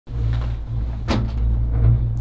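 Ropeway gondola cabin in motion: a steady low rumble, with one sharp clunk about a second in.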